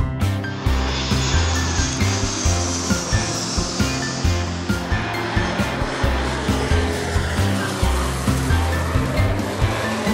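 Background music with a steady beat over the roar of a twin-engine turboprop airplane flying past, with a high whine that falls in pitch over the first few seconds.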